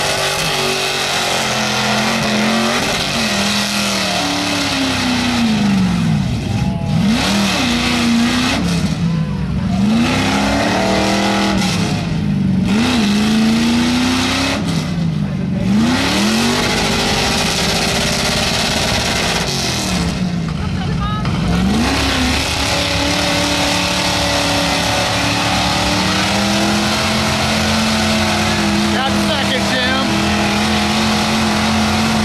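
Mega mud truck's engine revved hard over and over as its big tires spin through deep mud, the pitch rising and dropping back about half a dozen times. Near the end it is held at high revs.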